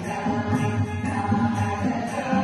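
A mixed group of older men and women singing a Carnatic song together into microphones.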